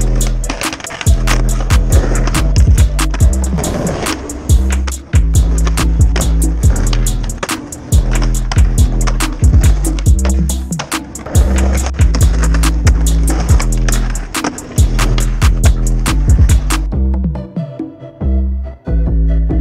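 Skateboard wheels rolling on concrete, with the pops and landings of street tricks, under a music track with a heavy bass line and a fast ticking beat. The music cuts off about a second before the end.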